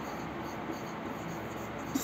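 Marker pen writing on a whiteboard: faint, continuous rubbing strokes as a word is written out.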